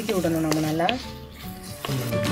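Chopped onions sizzling as they fry in oil, stirred with a wooden spatula. A voice sounds over roughly the first second.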